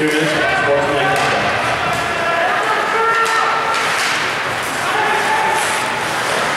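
Ice hockey play in an arena: shouts and long held calls from players and spectators, with scattered sharp clicks of sticks and puck.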